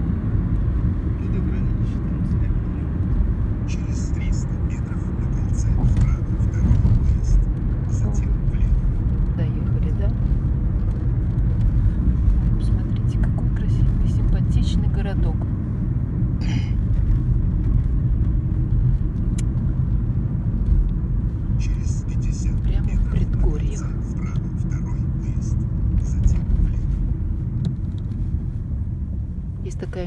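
Steady low rumble of a car's engine and tyres on the road, heard from inside the moving car.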